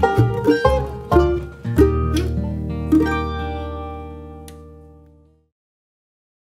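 Bluegrass band of mandolin, banjo, acoustic guitar and upright bass picking the closing notes of a song, ending on a final chord that rings out and fades away. The sound stops abruptly about five seconds in.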